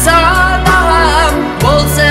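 A boy's voice singing an Uzbek song live through a microphone, drawing out a wavering melodic line over amplified band accompaniment with a steady bass.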